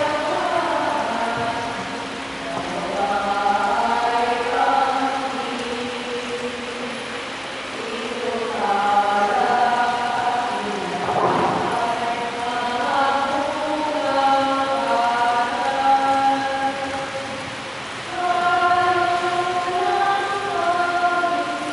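Congregation or choir singing a slow offertory hymn in a reverberant church, in phrases of long held notes with short breaks between them.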